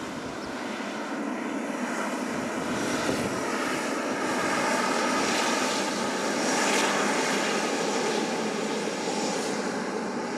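Jet engine noise from a Boeing 777F freighter's GE90 engines as the aircraft rolls slowly past. It is a steady rumble with a high whine, swelling as the engine comes abreast and loudest about seven seconds in.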